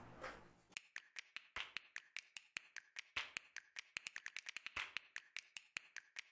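Many quick, irregular small clicks and taps, some in fast runs, from plastic parts being handled as the homemade battery pack is fitted into the Ecovacs Deebot Slim DA60 robot vacuum's battery compartment.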